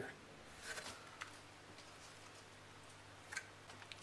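Near silence: low room hiss with a few faint, brief rustles and scrapes of hands working loose potting compost in a plastic nursery pot, about a second in and again near the end.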